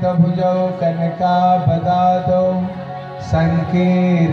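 Devotional chanting with music: long held notes over a steady low note, easing briefly near the end before resuming.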